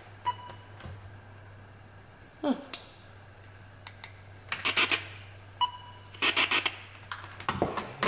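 Spirit box and Bluetooth speaker rig giving a low steady electrical hum, with two short beeps and a couple of bursts of rapid crackling as the plug and cord are handled. The hum cuts off near the end. The weak output points to a faulty connecting cord.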